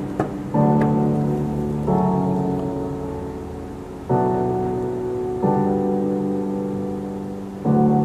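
Background music played from a USB stick by a digital media player through a mixer amplifier and a small loudspeaker in the room: slow, sustained chords, each struck and then fading, changing about every one to two seconds. A light click sounds just after the start.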